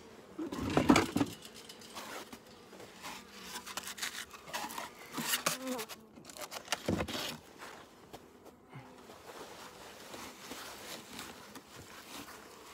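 Honeybees buzzing around an open hive, a faint steady hum. A few louder bumps and rustles from the hive parts being handled break in, the loudest about a second in.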